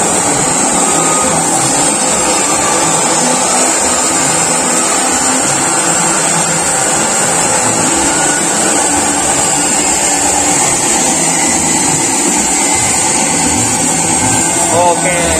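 Steady, loud machine noise, a continuous hiss and whir that does not change.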